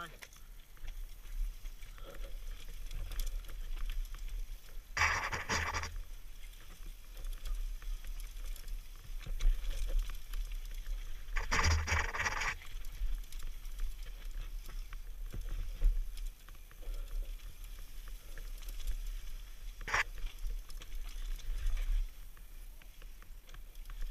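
Mountain bike riding down a rough rocky trail, recorded from a helmet camera: steady wind rumble on the microphone with the bike's rattling and knocks over rocks and roots. Two louder rushing bursts of about a second come around 5 and 12 seconds in, and a single sharp knock near 20 seconds.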